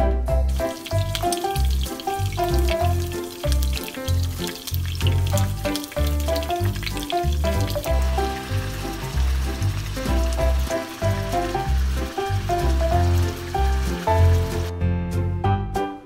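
Meat sizzling as it fries in hot oil in a frying pan, over background music with a steady bass line. The sizzle stops near the end while the music carries on.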